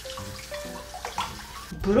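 Kitchen tap running into a glass bowl of water in the sink while a head of broccoli is rinsed in it by hand.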